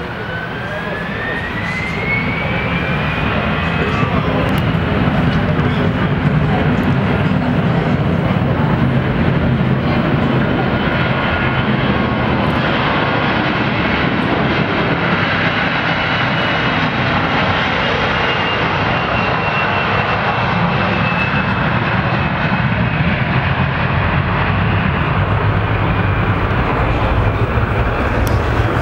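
Airbus A321 jet engines spooling up to takeoff thrust: a whine rises in pitch as the sound builds over the first few seconds. The engines then run loud and steady through the takeoff roll and climb-out, with a high whine slowly falling in pitch midway.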